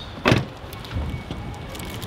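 Rolls-Royce Wraith's rear-hinged coach door shutting, with a single sharp latch thud about a third of a second in, followed by faint low knocks.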